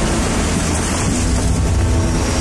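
Loud, steady rushing roar of a fan-driven hovercraft flying overhead, with a low engine hum beneath the air noise.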